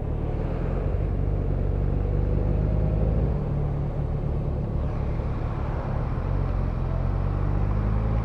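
Steady low engine drone of slow-moving traffic heard from a motorcycle: the rider's Yamaha FZ1N inline-four ticking over at low speed, with a fire truck's engine running alongside.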